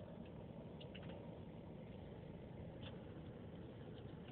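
Quiet, steady low rumble of a car idling, heard from inside the cabin, with a few faint clicks.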